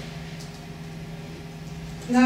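Room tone: a steady low hum with a faint hiss underneath.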